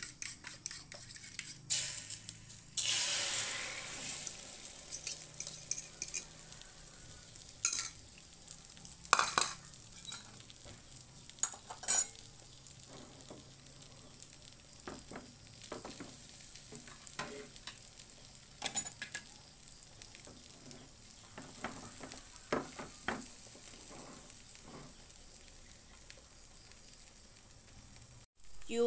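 Beaten egg poured into a little hot oil in a nonstick frying pan: a burst of sizzling about three seconds in, then steady frying while a plastic spatula scrapes and taps against the pan.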